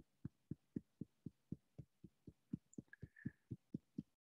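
Fingertips tapping lightly on the bone just below the eyes in a qigong self-tapping exercise: faint, soft thumps at an even pace of about four a second.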